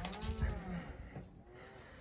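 Wooden room door swinging open, its hinge giving a short creak that rises and falls in pitch, with a fainter squeak a moment later.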